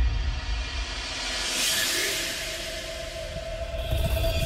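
Dark intro music and sound effects: a low rumble under a whoosh that swells to a peak about two seconds in, with a single held note coming in just before the peak.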